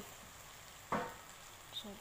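Shrimp faintly sizzling in a nonstick wok while being stirred with a spatula, with one sharp knock of the spatula against the pan about a second in.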